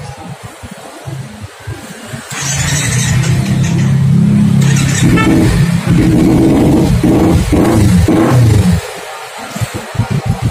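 Kawasaki Ninja 250 FI parallel-twin engine started on the electric starter about two seconds in, then running with a few rises and falls in revs before dropping back quieter near the end.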